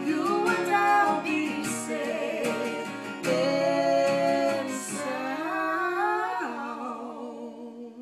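A man and a woman singing a slow duet in harmony over a strummed acoustic guitar. The strumming stops about five seconds in, and the voices hold their last notes and fade out.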